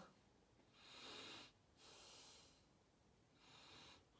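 A person sniffing the peel of a clementine held at the nose: three faint breaths through the nose, each about a second long.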